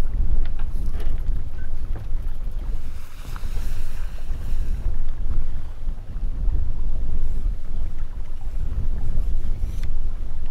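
Wind buffeting the microphone on an open yacht deck: a loud, uneven low rumble that rises and falls throughout, with a brief hiss about three seconds in.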